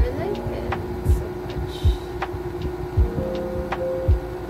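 Background music: a low drum beat roughly once a second under held notes.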